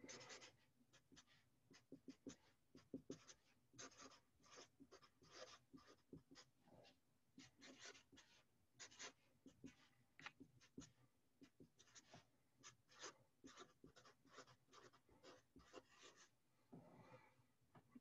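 Felt-tip marker writing on paper: faint short strokes in quick, uneven succession as letters are written one after another.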